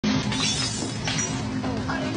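Film soundtrack of a rowdy gremlin party: glass shattering and clattering several times over music with a held low note, with squealing creature chatter near the end.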